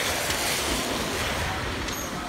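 A car driving fast through flood water on the road, its tyres throwing up spray: a steady rush of splashing water over a low rumble.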